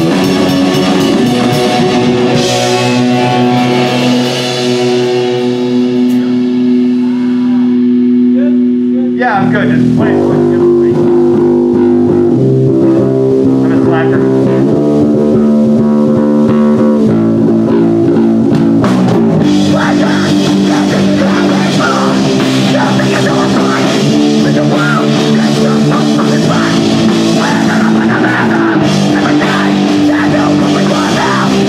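Live hardcore punk band playing loud distorted electric guitars, bass and drum kit. A chord is left ringing with the drums out for a few seconds, then about nine seconds in the full band crashes back in and drives on.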